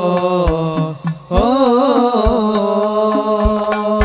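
Sholawat devotional song sung live through a PA, a melodic vocal line over hadroh frame drums (rebana) beating a regular low thump. The singing breaks off briefly about a second in, then resumes.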